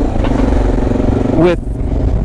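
Motorcycle engine running steadily at an even speed while riding, with low road rumble underneath.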